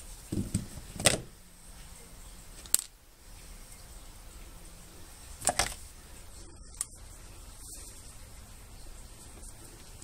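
Thin metal wire being cut into short lengths with wire cutters for model railings: a few sharp snips, one every second or few seconds, with a close double about halfway through.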